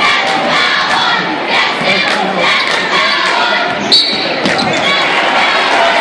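Crowd noise filling a large gymnasium, with a basketball bouncing on the hardwood court. A brief high whistle, from a referee's whistle, sounds about four seconds in.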